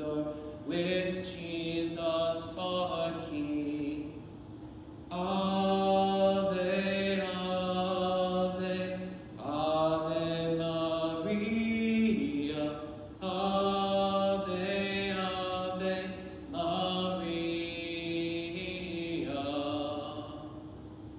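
A single voice singing a slow, chant-like hymn in long held phrases of a few seconds each, with short breaths between them.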